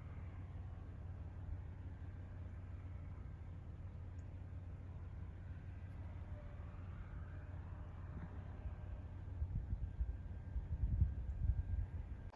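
Wind buffeting the microphone as a steady low rumble, gusting louder and more unevenly near the end.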